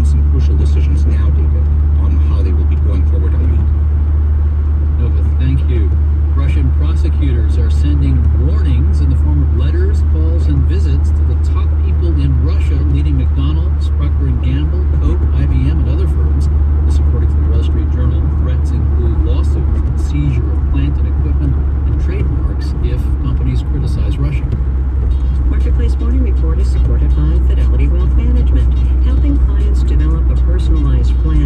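Steady low road and engine rumble inside a moving car's cabin, with a muffled voice speaking under it throughout.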